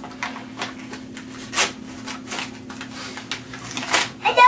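Wrapping paper being torn and crumpled by hand in short, irregular rips and crackles, with one louder rip about one and a half seconds in.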